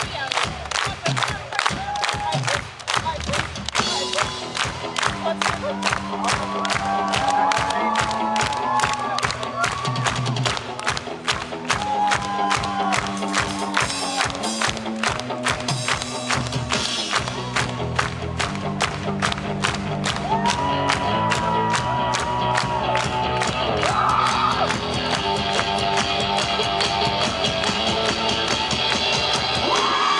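Indie rock band playing live: a steady driving drum beat with electric guitars, bass and vocals, and a crowd cheering along, recorded from within the audience.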